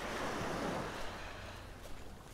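Small waves breaking and washing up a pebbly shore: a steady hiss of surf that eases off slightly after the first second.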